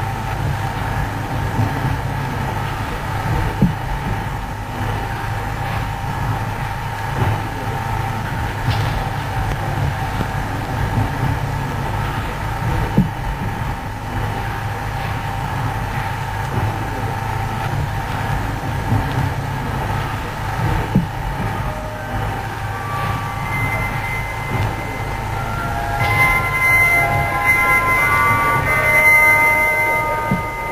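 Steady low hum and noise of an old film soundtrack, with a few scattered clicks. About eight seconds before the end, high music notes start coming in and grow louder.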